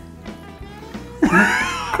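Soft background music, joined just past the middle by a loud, drawn-out voice sound whose pitch rises and then falls.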